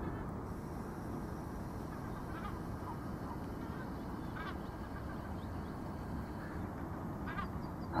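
A few faint, short bird calls, four in all and a couple of seconds apart, over a steady low outdoor background noise.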